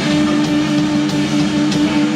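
Live rock band playing loud: electric guitars through Marshall amplifiers, with bass and drums, one guitar note held steady throughout.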